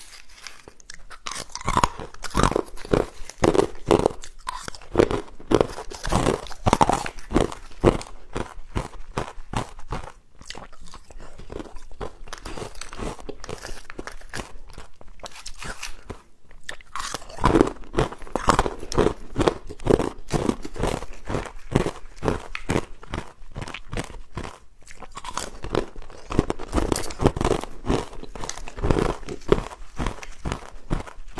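Ice cubes bitten and chewed close to the microphone: rapid crunches one after another, easing to softer chewing for several seconds in the middle, then loud crunching again.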